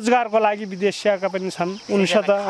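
A woman talking, with a steady high-pitched chirring of insects behind her voice.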